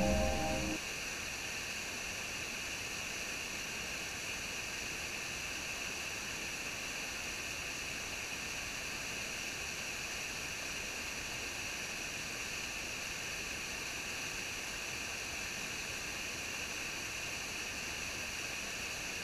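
Background music cuts off under a second in, leaving a steady, high-pitched hiss of rushing water from a small waterfall.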